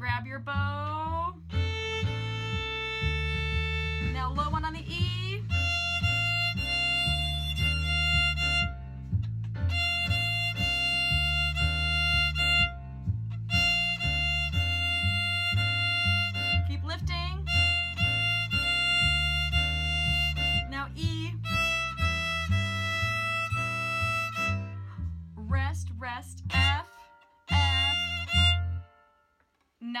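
Violin bowing long held notes of a simple melody over a recorded backing track with a steady, repeating bass line. The music stops a little before the end.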